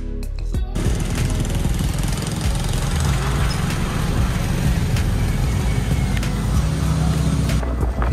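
Steady rushing wind and road noise from a moving vehicle, heaviest in the low range. It starts about a second in and drops just before the end, with background music underneath.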